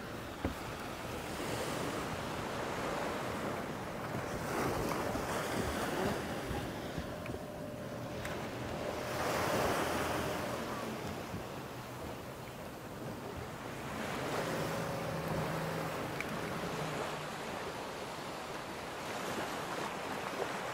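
Small waves breaking and washing up on a sandy beach in swells every few seconds, with wind buffeting the microphone. A faint steady motor hum comes and goes in the background.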